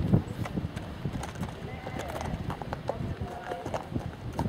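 Horse's hooves beating on grass turf as it moves around the dressage arena, a run of short, irregular thuds.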